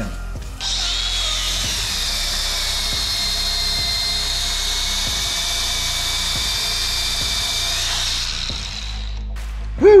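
DeWalt 20V brushless angle grinder driving a bolt-on belt sander attachment, with the belt running free. It spins up about half a second in, runs with a steady high whine over the belt's hiss, then winds down with a falling pitch near the end. The belt is mis-tracked, riding up on the inside of the lower wheel.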